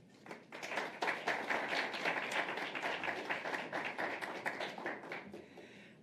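Audience applauding, many hands clapping, starting just after the start and dying away near the end.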